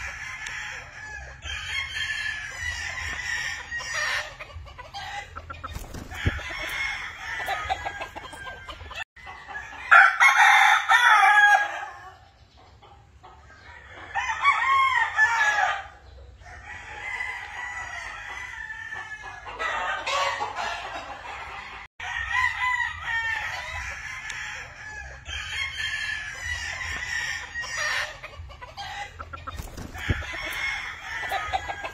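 Gamefowl roosters crowing and clucking, several birds calling over one another. The loudest crows come about ten seconds in and again around fifteen seconds.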